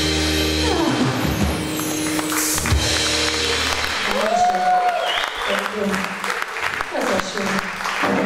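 A live rock band ends its song: the last chord, with bass, rings out, slides down and stops about a second in. Then the audience claps and cheers, with voices.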